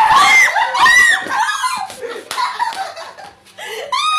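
Startled screaming as someone is jump-scared, loudest in the first second, breaking into laughter.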